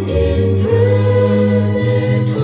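Music: a choir singing held chords that change about twice.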